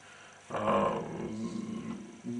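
A man's drawn-out hesitation sound, a steady 'ehhh' at one pitch, starting about half a second in and held for about a second and a half.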